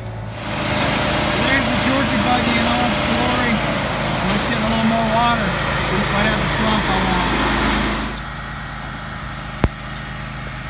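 Construction machinery engines running on a job site under a loud rushing noise that drops away sharply about eight seconds in, with a voice faintly audible in the noise. A single sharp knock comes near the end.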